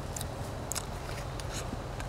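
A person chewing mandarin segments, with a few small wet clicks and smacks of the mouth, over a steady low background rumble.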